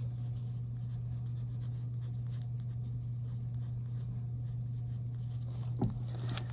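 Pen writing on a paper tab, a run of short, light scratching strokes as words are written by hand, over a steady low hum.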